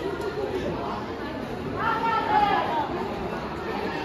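Indistinct chatter of spectators echoing in a large hall, with one voice standing out louder about two seconds in.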